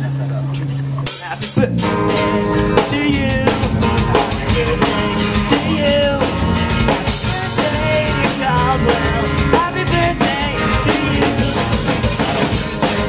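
Live rock band: a low bass-guitar note held, then about a second in the drum kit and electric guitars come in together with the bass in a loud, driving groove.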